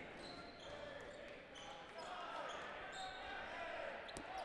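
Faint echoing gymnasium ambience during a dodgeball game: distant players' voices carrying across the hall, with a few faint ball impacts.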